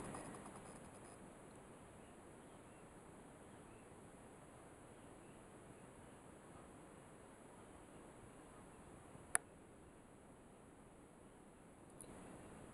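Near silence: faint room tone, broken once by a single sharp click about nine seconds in.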